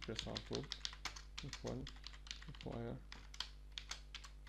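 Typing on a computer keyboard: a quick, irregular run of keystroke clicks as a line of code is entered, with a few short murmured words in between.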